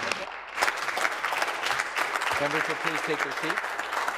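A group of people clapping steadily, with a voice speaking briefly over the applause in the second half.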